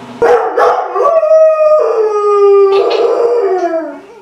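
A dog howling: a couple of short yips, then one long howl that steps down in pitch and tapers off near the end.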